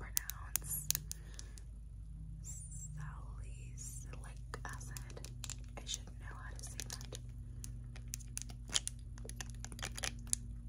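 Soft whispering with scattered sharp clicks and taps as long fingernails handle a plastic dropper bottle of serum. A faint steady low hum lies underneath.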